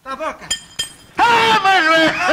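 A hammer striking with a short, high metallic clink that rings briefly about half a second in, followed by a loud voice.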